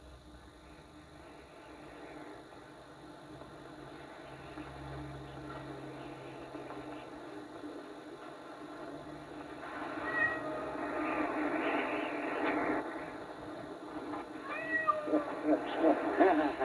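A group of cats meowing, loudest from about ten seconds in and again near the end.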